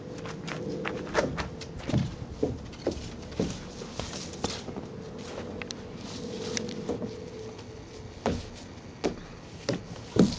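Irregular knocks and thumps of a small child's shoes and hands on a plastic tube slide as she climbs up inside it, with footsteps on wood chips.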